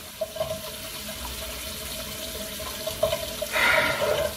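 Bathroom sink faucet left running, a steady hiss of water, with a brief louder rush near the end.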